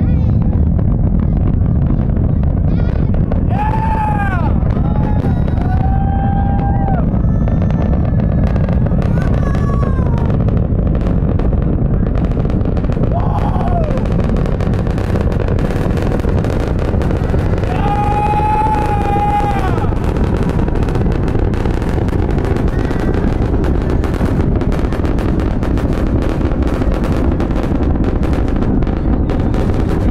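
Starship rocket engines heard from a distance during ascent: a continuous loud, deep rumble with dense crackling that grows thicker in the second half. Onlookers' whoops and shouts rise over it a few times, around 4 s, 6 s and 18 to 20 s in.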